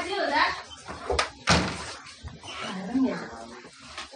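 Indistinct voices of young women talking in a small room, with two sharp knocks close together about a second and a half in.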